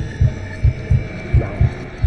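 Heartbeat sound effect: a steady run of low, soft thumps, about three a second, used as a tense backing bed.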